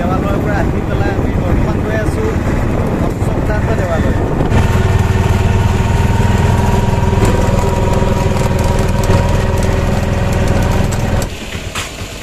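Auto-rickshaw engine running as it drives along, heard from inside the cab: a steady drone with a level tone riding above it. A man talks over it for the first few seconds; it gets louder once the talk stops and cuts off suddenly near the end.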